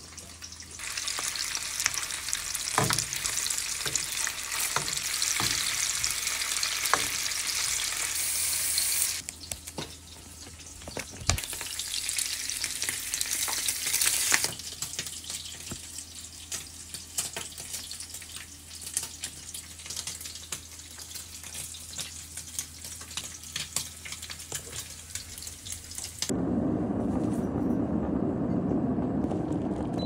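Kitchen food-preparation sounds: a steady hiss with many small clicks and taps, in a few edited stretches. About 26 seconds in, this changes to the steady rumble of a glass electric kettle at a rolling boil.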